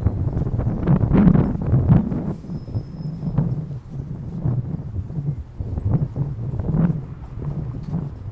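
Footsteps of a person walking on a concrete sidewalk, an even step about twice a second, over a low, uneven rumble.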